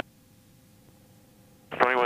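Faint steady hum with two thin held tones, low in level, like a cockpit intercom feed with no loud engine noise; a man's voice begins near the end.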